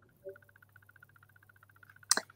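Near silence: faint room tone with a low steady hum and a faint, rapidly pulsing high tone.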